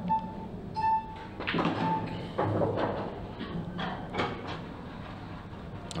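Shot-clock warning beeps, three at about one-second intervals as the clock runs down its last seconds, then the cue strike and pool balls clicking together as the shot is played.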